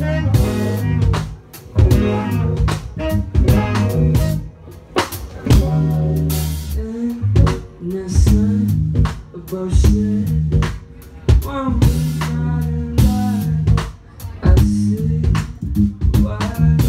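A live band playing a song: drum kit, bass guitar and electric guitar, with drum strikes in a regular beat over sustained bass notes.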